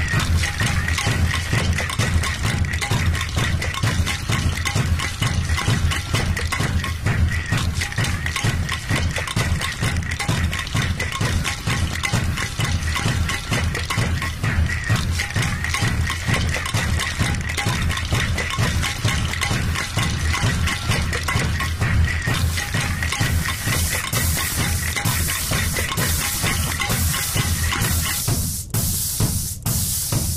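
Laptop electroacoustic piece built from everyday city recordings. A pulsing kick drum, made from a paint can pitch-shifted far down, runs under a ringing, didgeridoo-like drone taken from an air-conditioning unit. About three quarters of the way through, a hiss layer comes in, and near the end the drone drops out.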